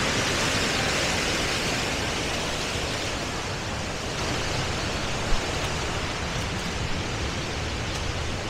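Waterfall pouring over a crumbling dam, a steady rush of water that grows a little fainter over the first few seconds. A single sharp tap about five seconds in.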